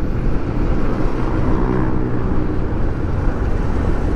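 Kawasaki Versys 650 parallel-twin engine running steadily at low road speed, under a constant rush of wind and road noise.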